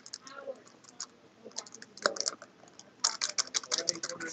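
Rapid clicking and scraping of a stick stirring resin in a plastic mixing cup, sparse at first and turning into a fast, dense run of clicks in the last second.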